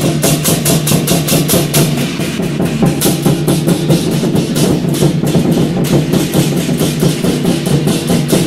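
Chinese war drums: large barrel drums beaten in a fast, steady rhythm, several strokes a second, with hand cymbals crashing along on the beats.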